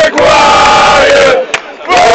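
A rugby league crowd, many voices together, loudly singing a terrace chant in phrases, with a brief break about one and a half seconds in.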